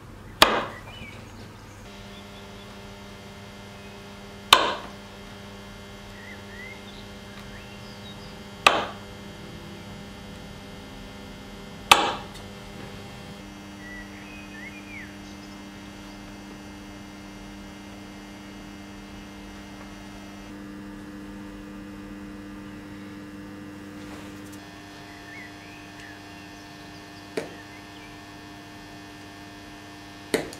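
A kitchen knife cutting through a log of chilled, sugar-coated cookie dough and knocking on a wooden cutting board. There are four sharp knocks a few seconds apart in the first half and a lighter one near the end, over a steady low hum.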